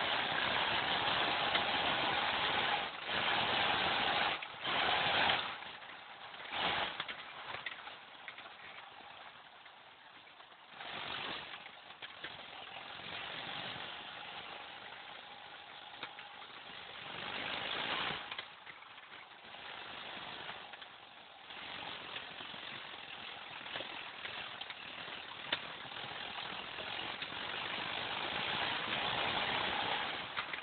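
Volvo 240 driving across a rough field, heard from inside the cabin: the engine and a rush of wind and tyre noise swell and fall off several times as the car speeds up and slows down.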